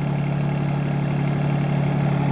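Kubota KX36-3 mini excavator's diesel engine running steadily, with an even, unchanging note.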